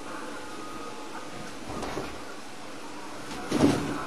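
A cat leaping onto a hanging curtain and clinging to it: a brief rustle and rattle of the curtain near the end, over a steady low room hum.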